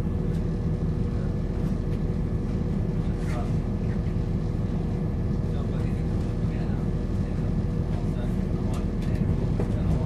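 Interior of a Class 170 Turbostar diesel multiple unit on the move: a steady low drone from the underfloor diesel engine, with a few constant humming tones and the rumble of the wheels on the track.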